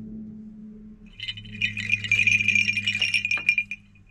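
A string of old brass crotal (sleigh) bells jingling for about two and a half seconds, starting about a second in, with a few sharp clinks among the ringing.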